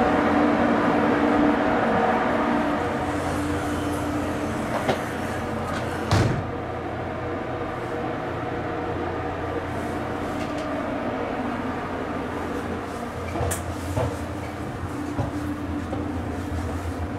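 Steady hum of a JR Kyushu 883 series 'Sonic' electric train standing at the platform with its doors open, with one sharp knock about six seconds in and a few lighter clicks near the end.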